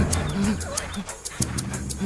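A young woman wailing and crying out in distress in short broken cries, over steady background film music.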